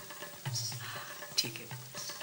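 Background score: soft low drum beats about every half second under a held tone, with a rough high hiss over it.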